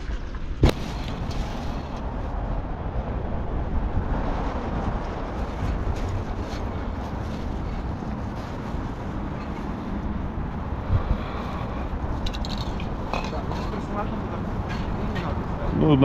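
Steady outdoor rumble and hiss, as heard on a body-worn camera while walking, with one sharp click about half a second in and a few faint clicks near the end.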